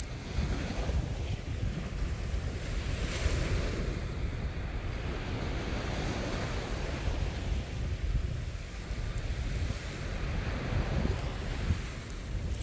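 Wind rumbling over the microphone, with the wash of surf breaking on a sandy beach behind it.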